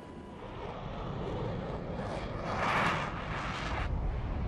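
A jet airliner's engines growing louder in a fast, low approach, peaking about three seconds in and then cutting off abruptly near the end: the sound just before the airliner strikes the tower.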